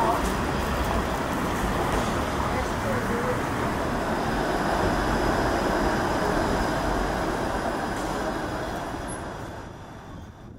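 City street traffic noise, with a streetcar passing and faint voices. It fades out over the last few seconds.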